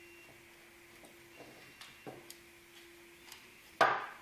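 Steel adjustable wrench used as a hammer, tapping a large plastic 3D print with short swings to knock it loose from the printer's build plate: a few faint clicks, then one sharp, ringing knock near the end.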